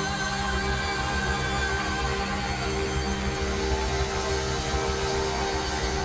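Live worship band music, with held chords over a steady, strong low end.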